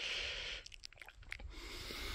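A person breathing near the microphone: a soft breath at the start and another near the end, with a few faint clicks in between.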